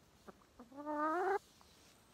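A hen giving one drawn-out call that rises in pitch, lasting just under a second, with a brief soft note just before it.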